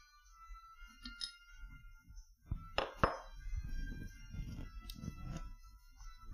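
Two sharp metallic clinks close together about three seconds in, as an engine valve is drawn out of an aluminium cylinder head and set down, followed by softer handling and rustling. Faint music plays underneath.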